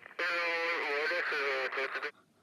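A person's voice holding one long, wavering note for nearly two seconds, a wordless vocalization that cuts off near the end.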